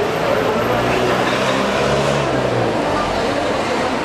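Street traffic: a passing motor vehicle's engine hum that builds and fades over about two seconds, over a steady background of road noise.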